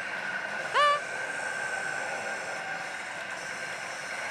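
Steady din of a pachinko parlor with pachislot machine sound effects and a held high tone. A short rising pitched sound comes just under a second in.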